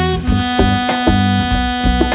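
Jazz quartet playing: the saxophone holds one long note over a walking bass and drums, after a run of shorter melody notes just before.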